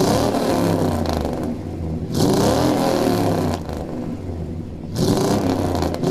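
Lowered OBS Chevrolet K1500 Z71 pickup's 5.7-litre L31 Vortec V8, heard through a Magnaflow stainless steel cat-back exhaust, idling and revved in three throttle blips: one at the start, one about two seconds in and one about five seconds in.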